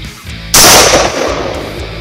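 A single rifle shot about half a second in: one sudden, loud crack whose report dies away over about a second.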